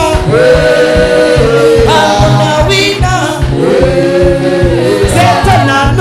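Live gospel praise singing, a man's voice leading through a microphone, with two long held notes over a steady low beat.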